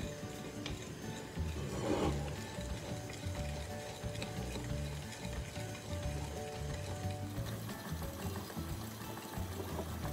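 Quiet background music with a wire whisk stirring melted chocolate in a ceramic bowl, faint scraping and ticking against the bowl as cold chocolate pieces are worked in to temper it.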